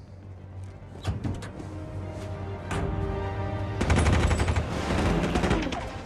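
Action-film soundtrack: a few separate gunshots, then a rapid burst of automatic gunfire about four seconds in, the loudest part, over a dramatic music score.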